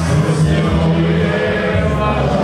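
Music with a group of voices singing together, steady and continuous.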